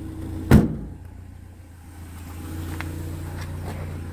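A single loud thump in the car's boot about half a second in, over a steady low hum.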